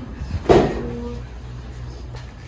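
Tack room door knocking as it is pushed open about half a second in, followed by a short squeak. A steady low hum runs underneath.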